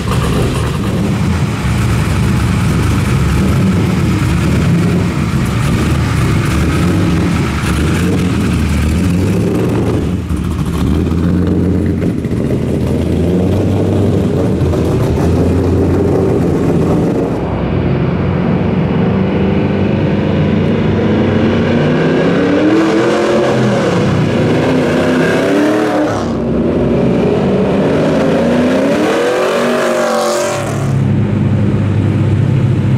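Exhaust of a 680 hp, 454-cubic-inch V8 in a GMMG-built 2002 Trans Am convertible. It runs steadily for about the first ten seconds, then drives off and accelerates, the engine pitch climbing in several rising sweeps in the last third.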